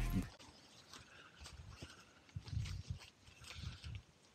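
Background music cuts off just after the start, then quiet handling sounds: soft low thuds and faint rustles and clicks as someone moves about on grass handling a webbing hammock tree strap.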